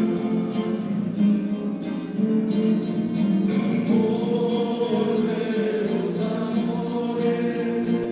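A church choir singing a hymn with instrumental accompaniment, held notes at a steady, full level.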